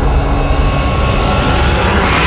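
Cinematic sound effect for an animated logo reveal: a loud, steady deep rumble under a rushing, jet-like hiss that grows brighter near the end.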